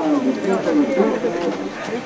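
Several people talking at once, close by: overlapping voices with no single clear speaker.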